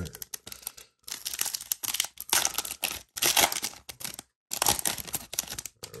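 A foil trading-card pack wrapper being torn open and crinkled by hand, in two long spells of crackling with a short pause between them.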